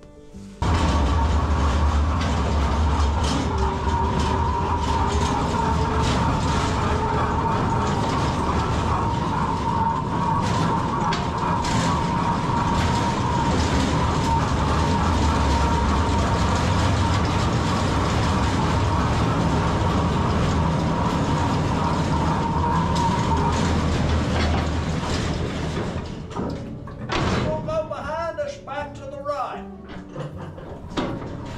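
Mine passenger car running on rails through a coal-mine tunnel: a loud, steady rumble with a high whine that starts suddenly about half a second in and eases off near the end.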